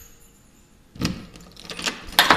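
A quiet first second, then a short burst of rattling and light metallic clicks about a second in, with a few more clicks near the end, as the handheld camera is moved about.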